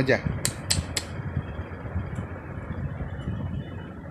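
Steady, fan-like room noise, with three sharp clicks close together in the first second.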